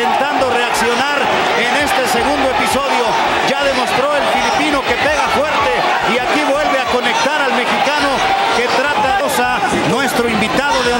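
Televised boxing broadcast: men's voices talking continuously over arena crowd noise, with a few sharp knocks.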